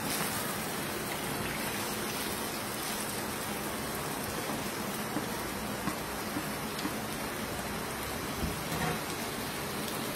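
Chicken and vegetables sizzling steadily in hot oil in a wok, with a few light knocks of a wooden spatula in the second half.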